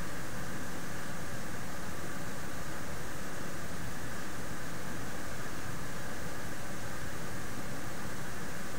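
Steady, even hiss of background noise, with no distinct events.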